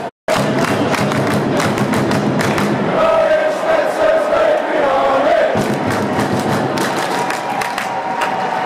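A large crowd of soccer supporters singing a chant together, with rhythmic clapping. A brief dropout comes just after the start.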